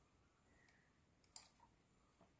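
A single sharp computer-mouse click a little over a second in, with a faint tick just before it, against near silence.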